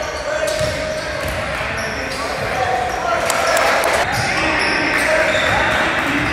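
Basketball game in a gymnasium: a ball bouncing on the hardwood floor and short sneaker squeaks, over the steady chatter of spectators echoing in the hall.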